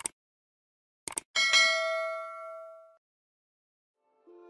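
Sound effect of a subscribe-button animation: a mouse click at the start, another click about a second later, then a bright bell ding that rings out and fades over about a second and a half.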